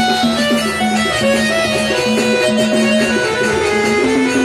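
Live gondhal folk music: a steady held drone under a wavering melody, driven by quick, even percussion strokes.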